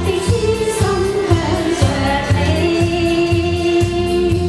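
A woman singing a Chinese pop song into a handheld microphone over accompaniment with a steady beat, her melody gliding and then holding one long note in the second half.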